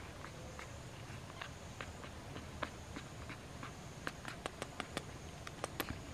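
Baby woolly monkey kissing a person's cheek and ear: a series of small smacking clicks, sparse at first, then quicker and louder from about four seconds in.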